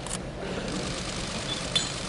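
Arena crowd noise building as a loaded barbell is pulled from the platform. About three-quarters of the way through there is one sharp clank as the bar and its plates rattle at the catch of the clean.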